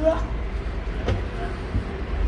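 Steady low rumble of street traffic and vehicles, with a single short knock about a second in. A brief snatch of voice is heard at the very start.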